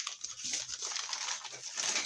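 Bubble-wrap mailer and plastic packaging rustling and crinkling continuously as hands pull a wrapped parcel out of it.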